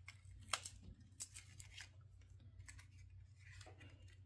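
Near silence with a few faint, sharp clicks and light handling noises from a small liquid lipstick tube and its packaging being handled and opened.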